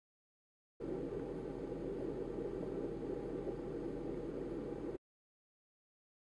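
Steady low background noise with no distinct events. It cuts in abruptly about a second in and cuts off just as abruptly about a second before the end.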